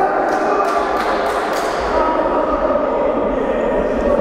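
Futsal game sounds in a large, echoing sports hall: a steady din of play, with a quick run of sharp knocks over the first second and a half as the ball and players hit the hard court.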